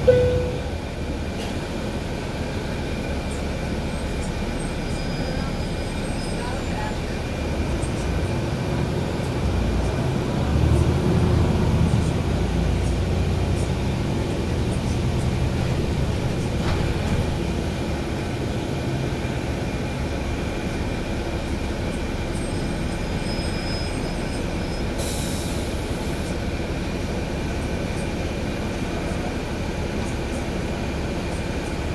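Inside a NABI 416 transit bus underway: the engine and drivetrain hum steadily under a few faint steady whines, and the low rumble swells about ten seconds in as the bus pulls ahead. A short beep sounds right at the start.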